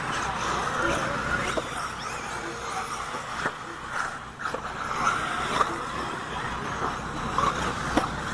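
Several 1/8-scale electric RC buggies racing on a dirt track: a steady whirr of their motors and tyres on the dirt, with a few sharp knocks.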